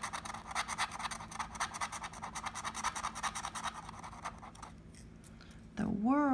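Instant scratch-off lottery ticket being scratched with a handheld scratching tool: rapid, even back-and-forth strokes that stop about four and a half seconds in.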